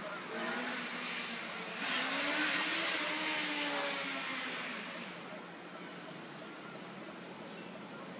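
A vehicle passing by: a rush of engine and road noise that builds, peaks about two to three seconds in and fades away by about five seconds in.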